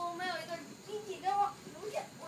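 Speech only: a high voice speaking in short, animated phrases.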